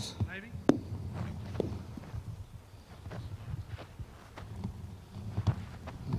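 A single sharp click of a golf club striking the ball, under a second in, followed by faint scattered footsteps on grass over a low steady rumble.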